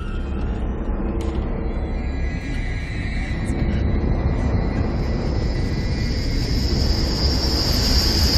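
Tense horror-film score: a deep low rumble under a high, thin sustained tone that swells louder through the second half.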